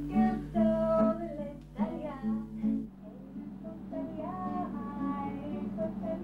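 Slow song sung with acoustic guitar accompaniment: the opening song of a music therapy session. The singing holds long notes, breaks off just before halfway, then carries on with more held notes.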